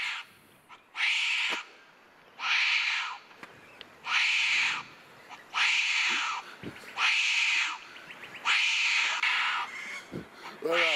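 Recorded wombat shrieks played back over a sound system: a harsh, raspy call under a second long, repeated about every one and a half seconds, six times in a row.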